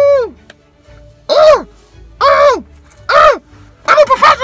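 A man's voice giving three short, high 'ooh' calls about a second apart, each rising and then falling in pitch.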